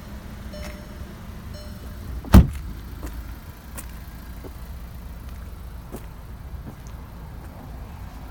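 A car door shut once with a solid slam about two seconds in, over a steady low rumble.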